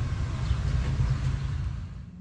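Nissan car's engine idling, heard from inside the cabin as a steady low rumble.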